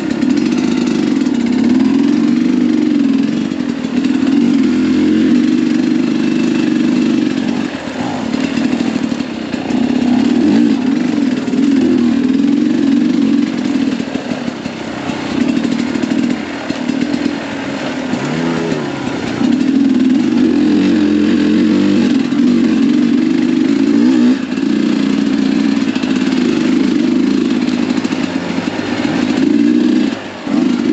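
Sherco 300 SE Factory two-stroke enduro engine revving up and down with the throttle. It eases off for several seconds around the middle, then runs at higher revs again.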